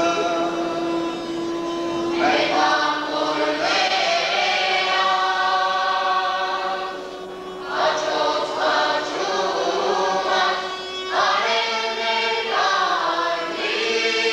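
Mixed folk ensemble singing an Armenian wedding-ritual song in chorus. It opens on a long held note, and the phrases pause briefly about two seconds in and again about halfway through.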